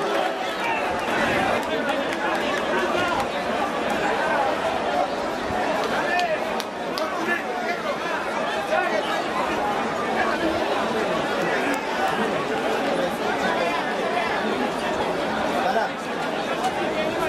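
A crowd of people all talking at once: a steady babble of many overlapping voices, with no single voice standing out.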